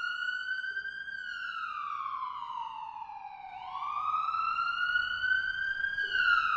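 Emergency vehicle siren sounding a slow wail: the pitch climbs for about a second, sinks slowly over the next two and a half seconds, then climbs again.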